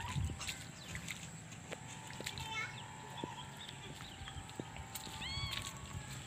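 Faint open-air ambience: a low rumble of wind on the microphone, strongest just after the start, under a thin steady tone. Near the end comes a short arched call that rises and falls, with several overtones, from an animal.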